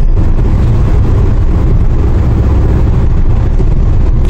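Steady low rumble of engine and road noise inside the cabin of a Daewoo Rezzo LPG minivan driving along the road.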